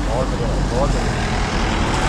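Motorcycle engine idling with a low, steady rumble, with a few short bits of voice over it early on.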